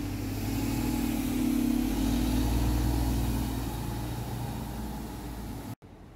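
MRT feeder bus engine running as the bus pulls away past the stop: a low hum that swells over the first two to three seconds and then fades, broken off suddenly near the end.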